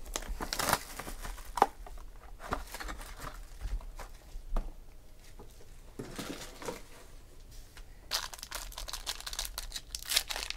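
Hands handling a trading-card hobby box, with scattered taps and knocks as it is opened and a pack is taken out; from about eight seconds in, a card pack's wrapper crinkles and tears as it is ripped open.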